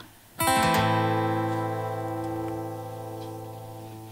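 Acoustic guitar strumming one last chord about half a second in, then letting it ring and slowly die away as the song ends.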